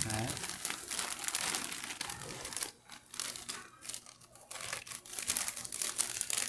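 Clear plastic bag crinkling in irregular bursts as hands handle it and pull out rubber battery-terminal caps, with a few short pauses midway.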